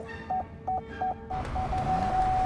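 Car proximity-warning beeps that start at about three a second, then quicken and run together into one steady tone near the end, warning of an obstacle ahead. A rush of noise swells under the last half second.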